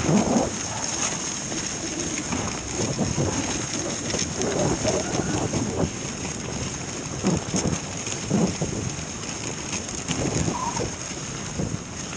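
Dog sled running along a snowy trail: a steady hiss and rumble of the sled's runners sliding over the snow.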